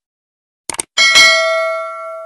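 Sound effects of a subscribe-button animation: a quick double mouse-click, then about a second in a bell ding that rings on and slowly fades, the notification-bell chime.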